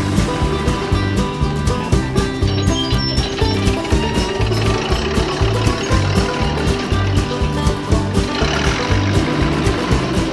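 Instrumental background music with a steady beat and a repeating bass line.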